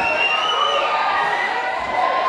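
Concert crowd cheering and shouting, many voices at once with a few drawn-out high yells.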